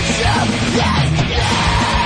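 Loud rock music with a vocal line; a singer holds one long note starting a little past halfway.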